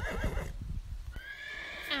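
A horse neighing: a high, held call that ends in a quavering wobble near the end.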